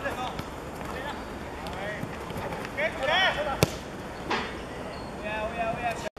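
Football players shouting to each other on the pitch, with one sharp thud of the ball being kicked about three and a half seconds in, over steady open-air noise.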